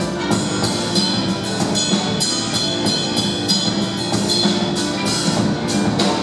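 Live instrumental funk: a grand piano played with a band, over a steady beat of drum and cymbal strokes about three to four a second, with no singing.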